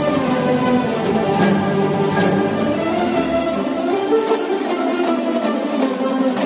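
Instrumental music led by a plucked string instrument, playing a steady melody.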